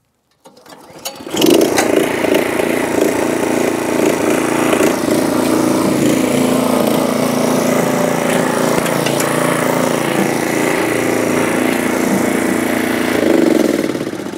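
Small gas engine of a Yardmax YD4103 power wheelbarrow coming up to speed about a second in, then running steadily under load as the machine climbs loading ramps. It swells briefly near the end before dropping off.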